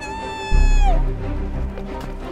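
A single drawn-out, meow-like animal cry, held steady and then falling at its end, over background music with a deep bass boom about half a second in.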